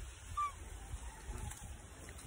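Faint wind buffeting the phone microphone, with a brief bird call about half a second in.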